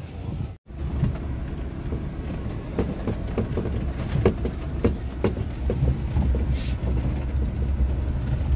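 Inside a car driving on a rough unpaved road: a steady low rumble from the engine and tyres, with irregular knocks and rattles as it goes over bumps. The sound cuts out briefly about half a second in.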